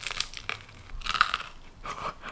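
Biting into and chewing a thick pizza crust close to the microphone: a series of short, crisp crunches.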